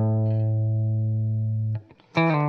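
Telecaster-style electric guitar holding a single low note, the root A, to end a blues lick; it rings steadily and is muted off abruptly near the end.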